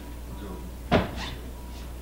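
A single sharp thump about a second in, with a few fainter knocks after it, over a steady low hum.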